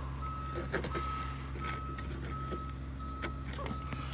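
An electronic beeper sounding one steady tone over and over, about every 0.7 seconds, with a few faint handling clicks and a low hum underneath.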